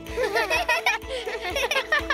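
Cartoon characters giggling in quick, high-pitched bursts over a steady background music score.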